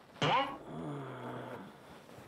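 A drowsy man's drawn-out groan: a sudden loud start with a falling pitch, then a low held tone that trails off after about a second and a half.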